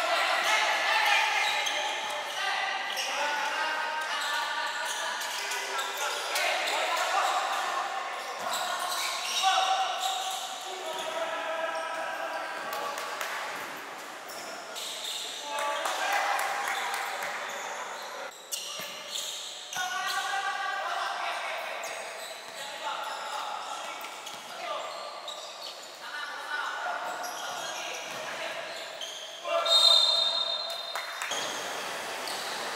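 Live basketball game sound in an indoor gym: a basketball bouncing on the court floor, with players' voices calling out throughout.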